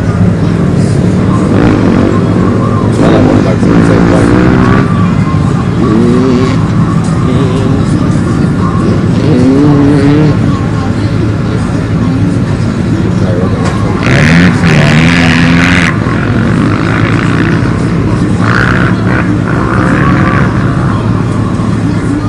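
Pickup truck engines idling steadily, with men's voices calling out several times over them. A short, louder burst of rushing noise comes about two-thirds of the way through.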